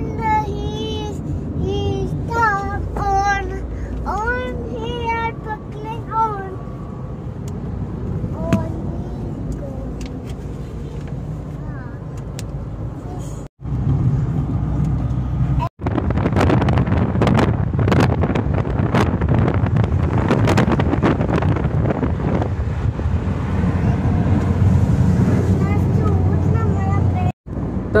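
Steady road noise inside a moving car, with a child's voice for the first several seconds. After a cut, about a third of the way in, louder road and street-traffic noise from inside the car, lasting until just before the end.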